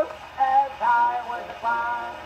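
Acoustic gramophone playing an old 78 rpm record: a man's voice singing a short run of held notes, several short notes in a row, as reproduced through the brass tone arm.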